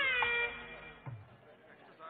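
The last note of a song: a high sung voice holds a note, slides down in pitch and stops about half a second in. Faint background noise follows.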